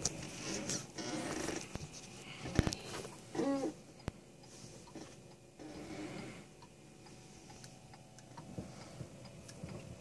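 Quiet rehearsal-room noise with scattered small clicks and knocks, and a short voice sound about three and a half seconds in.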